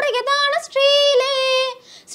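A girl singing solo with no instruments. She sings a short ornamented phrase, then holds one note for about a second, with a brief breath break near the end.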